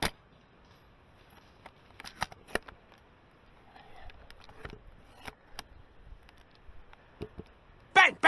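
Silverback Tac41 spring-powered airsoft sniper rifle firing once with a sharp snap. About two seconds later comes a quick cluster of sharp clicks, then lighter scattered clicks as the rifle is handled.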